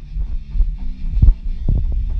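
Live rock band playing in a small room, bass-heavy: a low bass line and thudding drum hits dominate, with little high end.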